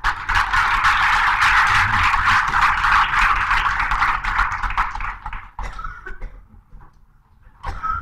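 Audience applauding, a dense patter of many hands that is loud at first and dies away about five and a half seconds in.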